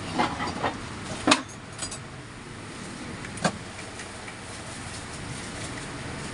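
A few sharp metallic clicks and knocks from hand work on a ceiling fan motor's shaft and housing: several small ones in the first second, the loudest about a second and a half in, and one more about three and a half seconds in, over a steady background hum.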